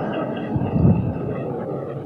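Lecture-hall audience laughing together, a steady wash of many voices laughing at once.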